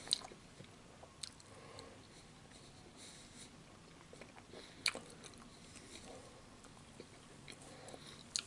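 Close-miked chewing of a sausage in a bun with peppers and onions, soft and wet, broken by a few sharp clicks; the loudest come just after the start and about five seconds in.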